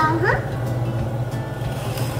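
Background music over a steady low hum, with a short questioning 'huh?' from a voice at the very start.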